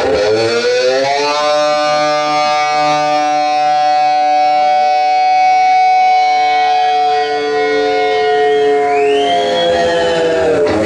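Distorted electric guitar playing one long note: the pitch dives down, bends slowly up over about a second, then holds steady for about eight seconds. Near the end a higher note swoops up over it.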